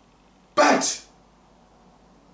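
One short, sharp vocal burst from a man, starting suddenly about half a second in and lasting about half a second, over faint room tone.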